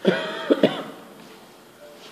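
A person clearing their throat and coughing, with two sharp coughs in quick succession about half a second in.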